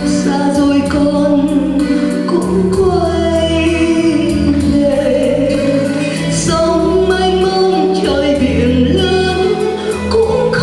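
A woman singing a slow Vietnamese song about her mother into a handheld microphone, holding long notes that glide from pitch to pitch, over an instrumental accompaniment.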